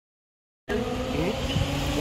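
The sound cuts out completely for just under a second, then a steady vehicle hum with a held whine comes in, reverberant in a concrete parking garage.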